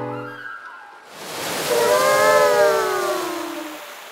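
Cartoon whale sound effect: a rush of water swells and fades while a long, low whale call glides downward in pitch.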